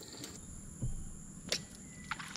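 Quiet background with a soft low thump near the middle and one sharp click about a second and a half in, over a thin steady high-pitched hum.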